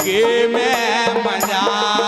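Live Indian folk music: a male singer's ornamented, wavering vocal line over sustained harmonium tones, with a steady beat of percussion and jingling wooden clappers (khartal). The voice bends up and down through the first second and a half, then settles onto held notes.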